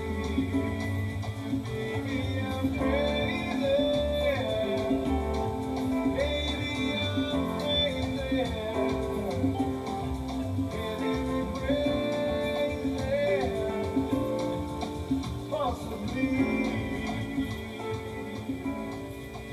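A pop song with a singing voice and guitar playing through speakers from a Realistic TR-3000 four-track reel-to-reel tape deck.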